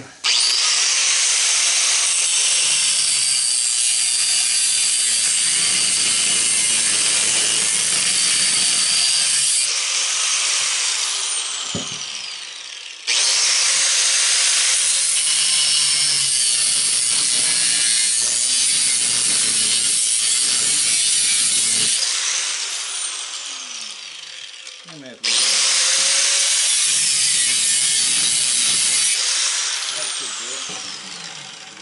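Angle grinder with a cut-off wheel cutting into a small fan motor's steel housing. It makes three cuts, the first two about nine seconds each and the last about four. Each starts suddenly and ends with a falling whine as the wheel spins down.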